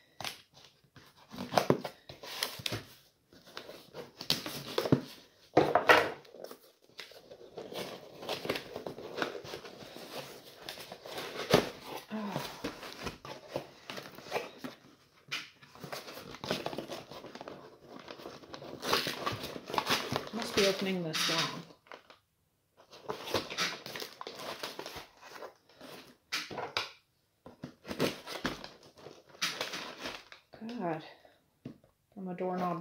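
Scissors and a knife cutting through packing tape on a cardboard box, with the cardboard flaps tearing and rustling and tissue paper crinkling, in irregular bursts with short pauses.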